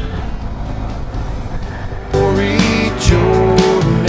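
Motorcycle riding noise, engine and wind on the move, then about two seconds in a loud song with guitar and a singing voice starts and carries on.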